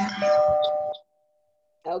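Two-note falling ding-dong chime from a speaking timer, marking that a speaker's minute is up. It sounds over the last words of speech, and the lower note rings on faintly for about a second before dying away.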